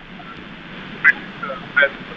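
Street background noise at a moderate level, with two short, high-pitched sounds: one about a second in and another near the end.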